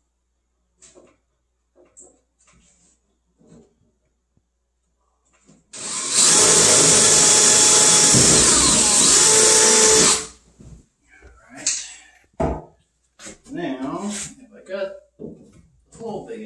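Cordless drill boring a hole in the crate's wooden wall, running steadily for about four seconds from about six seconds in and then stopping. Light knocks and handling sounds come before and after it.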